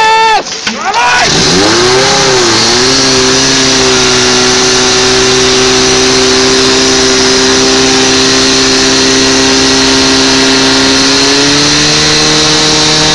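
Portable fire pump engine running hard at high revs. Its pitch dips and climbs in the first couple of seconds, then holds steady under a constant hiss, and it rises a little near the end.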